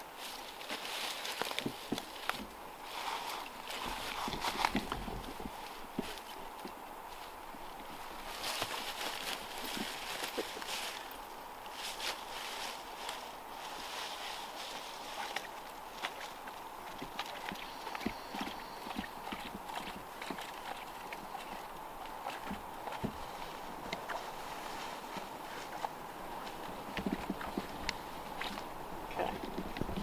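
Climbing line being pulled up through a tight tree crotch, the rope scraping and clicking against the bark in a run of short irregular jerks. The rasp tells of a tight crotch gripping the line.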